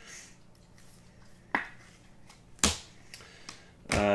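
Baseball trading cards handled and flipped through by hand, with a few sharp clicks as the cards snap and tap against each other; the loudest comes about two and a half seconds in.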